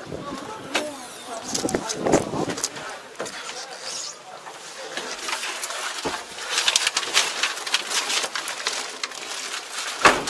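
Cab door of a Yanmar YT472A tractor being unlatched and opened, then someone climbing into the cab: a string of clicks, knocks and handling noises, with voices in the background.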